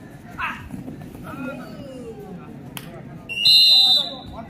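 Referee's whistle: one short, loud, steady blast near the end.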